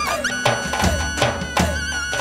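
Drums played on a Roland TD-30 electronic kit along with a Balkan Roma backing track: hits land on a steady beat about three a second, under a wavering, violin-like lead melody and bass.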